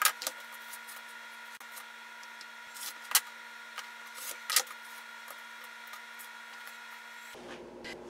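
Rotary cutter and acrylic ruler working on a fabric block on a cutting mat: a few short, sharp clicks and brief rasps as the ruler is set down and the blade is run through the fabric, the loudest about three and four and a half seconds in, over a faint steady hum.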